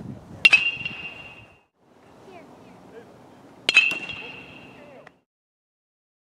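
Metal baseball bat striking pitched balls twice, about three seconds apart, each contact a sharp ping with a short high ring.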